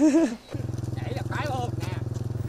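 A man laughs briefly. Then comes a steady low drone that pulses rapidly, with a voice over it for a moment in the middle.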